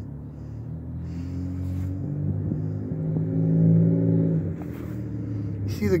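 Low, steady-pitched hum of a vehicle engine. It swells to its loudest about three and a half seconds in, then fades away.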